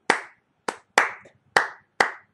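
Hand claps tapping out a syncopated Afrobeats/dancehall rhythm: about five sharp claps at uneven, off-beat spacing.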